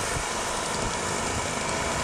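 Steady outdoor city background noise: a distant traffic hum, with no distinct events.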